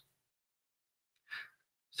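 Near silence in a pause in speech, broken about a second and a half in by one short, faint intake of breath.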